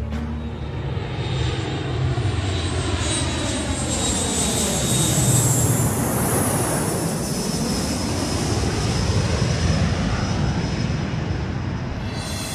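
A jet airliner's engines run loud as it moves along the runway. The noise swells to a peak with a high whine about halfway through, then eases off.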